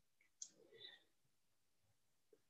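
Near silence, broken by one faint computer mouse click about half a second in and a fainter brief sound just after it.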